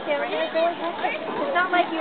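People talking, several voices overlapping in unclear chatter.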